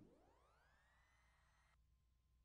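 Near silence, with a very faint tone that glides upward over about a second and then holds. Shortly before the end it cuts to a fainter, lower steady tone.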